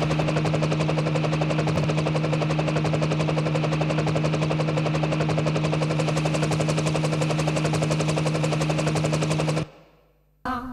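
Electronic dance music from hardware synthesizers and samples: a very fast, even stream of drum hits, like a drum roll, over one held low bass note, cutting off suddenly near the end.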